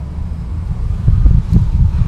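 Low rumbling noise on the microphone, with no voice. It gets a little louder and more uneven about a second in.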